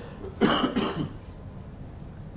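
A man's single short cough, about half a second long, picked up close on a handheld microphone.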